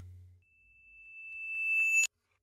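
A single high, steady electronic tone, like a sound-effect beep, swelling louder over about a second and a half and then cutting off abruptly.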